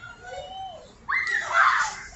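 A person letting out a loud, high, playful shriek about a second in, with a shorter call just before it.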